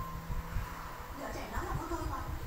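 Indistinct voice-like sound in the second half, over low, irregular bumping.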